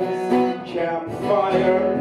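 Acoustic guitar strummed steadily in a live song, with a brief dip in loudness a little past halfway.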